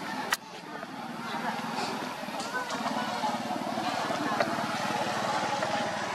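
Outdoor background of indistinct people's voices over the steady running of an engine, with a single sharp click just after the start.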